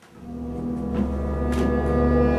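Low, ominous soundtrack drone fading in and growing louder: steady held tones over a deep rumble, a horror-film music cue.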